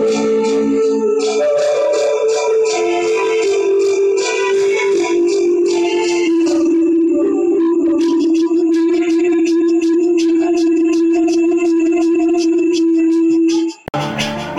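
Live band music on electronic keyboards: a melody over a steady, regularly ticking percussion rhythm, with one long, slightly wavering held note through the second half that breaks off just before the end.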